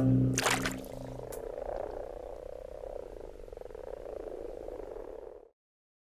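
A chorus of common frogs croaking steadily, massed in a pond to mate and spawn. The tail of background music fades out in the first second, and the croaking cuts off suddenly near the end.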